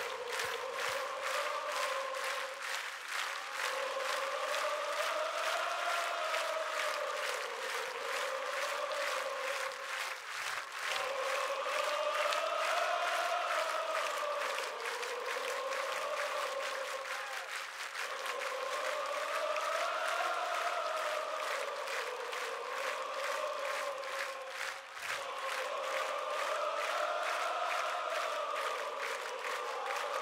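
Large rock-concert crowd singing a wordless rising-and-falling phrase in unison, repeated about four times, over steady rhythmic clapping, with almost no band playing underneath.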